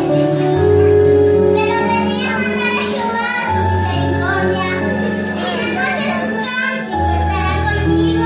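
A young girl singing into a microphone over an electronic keyboard accompaniment, with held bass notes that change every few seconds.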